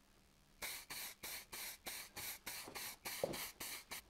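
Clear coat sprayed in quick short bursts, about three a second, starting just under a second in, as coats go onto freshly white-painted motorcycle frame brackets.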